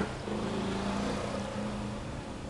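Gasoline poured from an aluminium drink can into a plastic bucket of fuel, a splashing trickle that tapers as the can is upended, over a steady low engine-like hum.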